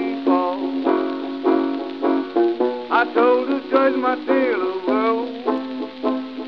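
Early country-blues recording of a plucked six-string banjo playing a quick run of notes, with no sound above the middle treble, as on an old 78 transfer.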